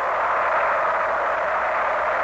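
A large crowd cheering steadily: a dense, even wash of many voices with the thin, narrow sound of an old film soundtrack.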